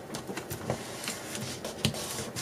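Fingers rubbing and pressing paper flat, burnishing a freshly glued strip down onto a journal page: soft irregular paper rustling with scattered light taps, and one sharper tap near the end.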